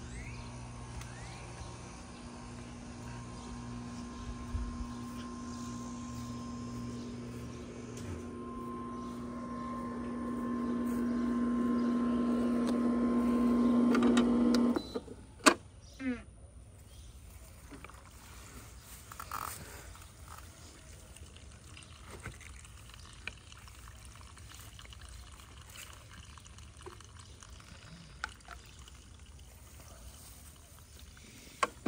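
Intex sand filter pump running with a steady hum that grows louder, then cut off suddenly about halfway through, followed by two sharp clicks.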